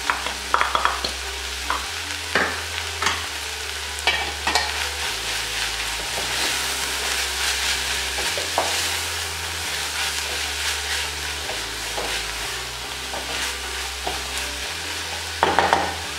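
Beef mince filling sizzling as it fries in an aluminium pot, stirred with a wooden spoon, with scattered knocks of the spoon against the pot.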